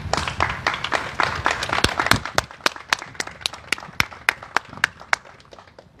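A small group applauding: many claps at first, thinning to a few scattered claps that stop about five seconds in.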